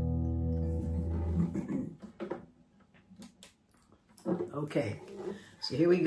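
A 1980 Takamine EF385 twelve-string acoustic guitar, plugged in through an amp, lets its last strummed chord ring on and fade away over about a second and a half. A few faint clicks follow, then a voice starts speaking near the end.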